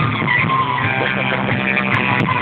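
Live amplified band music from a stage, heard from within the audience, with held notes over a steady bass line.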